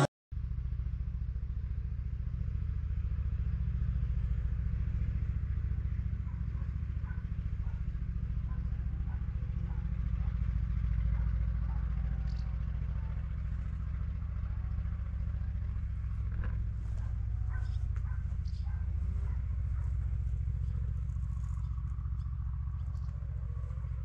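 Steady low rumble of wind buffeting a small action camera's microphone outdoors, with faint scattered clicks and ticks in the second half.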